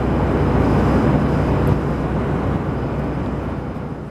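Steady cabin noise of a jet airliner in cruise flight, a constant rush of engine and airflow, fading away near the end.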